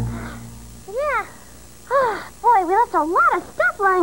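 A low thud fading out at the start, then a high voice making several wordless sounds that sweep up and down in pitch in quick succession.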